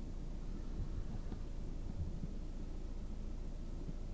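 Low, steady hum of a VW Lupo GTi's 1.6-litre four-cylinder engine idling, heard from inside the cabin, with a few faint soft knocks.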